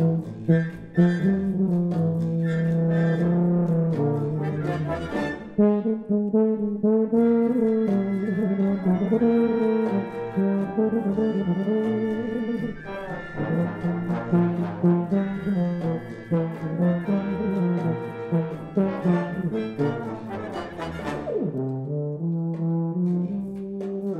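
Solo tuba playing a Latin cha-cha melody over a full brass band accompaniment.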